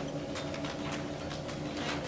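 Faint recorded hand claps from a pop song, a quick run of light claps over a steady low hum.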